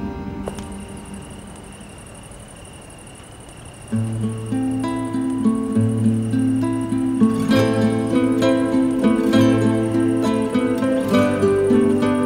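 Background score: the music fades down at the start, and about four seconds in a plucked guitar piece with held low bass notes comes in abruptly.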